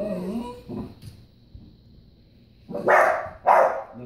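A dog whines briefly, then gives two loud barks about half a second apart near the end.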